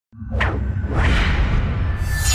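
Whoosh sound effects of an animated logo intro: a quick swoosh about half a second in and a longer rising sweep about a second in, over a deep steady rumble.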